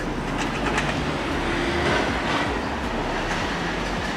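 Steady, even rumble of outdoor city noise, with no single event standing out.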